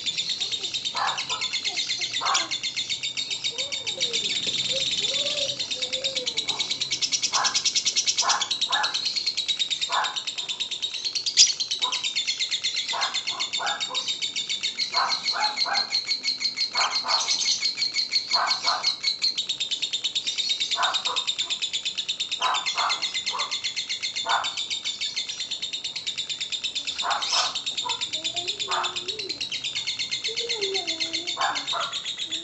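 A lovebird's 'ngekek panjang': one long, unbroken, rapid high-pitched chattering trill that runs on without a pause. A single sharp click stands out a little over a third of the way in.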